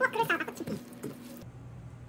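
Gloved hand tossing glass noodles and vegetables in a stainless steel bowl: wet squishing with several short high squeaks in the first second. It gives way to a low steady hum about a second and a half in.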